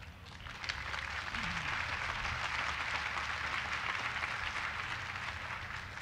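Audience applauding, starting about half a second in and holding steady.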